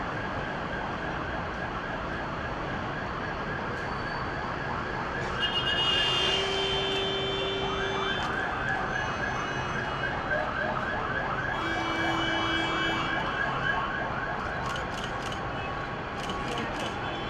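Fire engine siren sounding a fast yelp, a rapid string of short rising wails, with two held steady tones cutting in, the first about six seconds in and the second near twelve seconds; the loudest moment is around six seconds.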